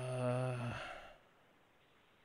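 A person's drawn-out 'uh' hesitation, held at one steady pitch while trying to remember something. It fades out about a second in, then near silence.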